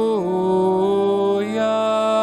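Church organ playing slow, sustained chords, moving to a new chord twice.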